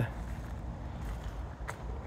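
Quiet outdoor background: a low, steady rumble with a single faint click about one and a half seconds in.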